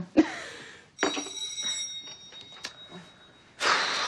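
Electric doorbell ringing once, starting about a second in with a bright steady ring that fades over the next second or so. The bells are said to have been put in wrongly, so they ring with nobody at the door.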